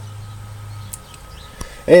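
Low steady hum with a couple of faint clicks; a man starts speaking near the end.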